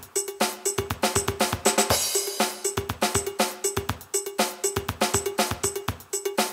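Roland MC-303 Groovebox playing a preset drum-machine pattern: a steady beat of kick drum and hi-hat with a short pitched note repeated in the groove. A short burst of cymbal noise comes about two seconds in.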